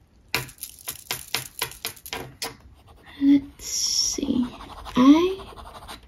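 Cross Aventura fountain pen being shaken in quick strokes to get the ink down to a nib that won't start, clicking about five times a second for a couple of seconds. Then the nib scratches on paper, with a short hum of voice near the end.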